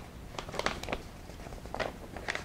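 Stiff paper rustling and crinkling as a manila envelope is handled and opened, in short irregular bursts, most around half a second in and again near the end.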